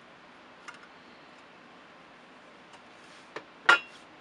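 Faint scattered clicks, then one sharp clink about three and a half seconds in, as the cover of a small video distribution amplifier's case is worked off to expose its circuit board.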